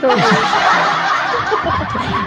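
Several people laughing together, chuckles and giggles overlapping, heard over a live-stream call.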